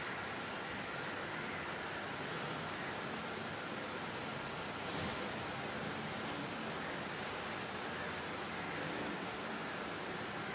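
Room tone: a steady, even hiss with no distinct sound events.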